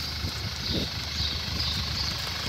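2014 Audi Q5's engine idling steadily.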